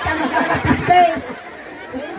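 People talking into microphones over a PA, quieter for the last half second or so.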